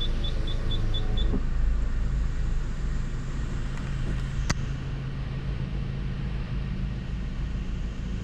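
A car's reversing parking sensor beeps quickly, about four beeps a second, while the car backs into a space, and stops just over a second in; a power-window motor whirs alongside and stops at about the same time. After that the engine idles with a low steady hum, and there is a single click about four and a half seconds in.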